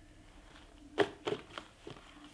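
Small boxed battery packs being handled and set down on a table: a sharp tap about a second in, then a few lighter taps and rustles of the packaging.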